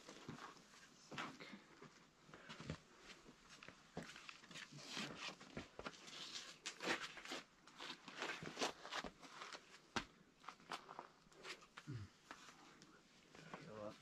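Faint, irregular scuffs and taps of a climber's rubber-soled shoes and chalked hands on a sandstone boulder as he moves across a steep overhang.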